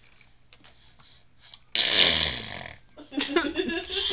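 A baby lets out a sudden loud, rough squawk a little under two seconds in, lasting about a second and falling in pitch, then starts babbling near the end.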